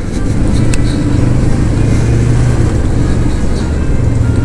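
Kawasaki Vulcan S 650's parallel-twin engine running under way in slow traffic, its low note holding steady over a constant rush of road noise.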